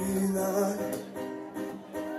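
Live band music: a male singer holding a long note, then singing on over guitar accompaniment.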